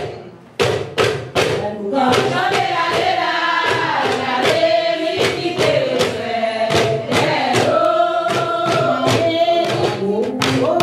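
A group of voices singing a chant-like song over a steady percussion beat. The sound drops briefly at the start and picks up again about half a second in.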